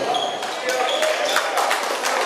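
A basketball bouncing on a hardwood gym floor, a run of bounces from about half a second in, over the chatter of voices in the gym.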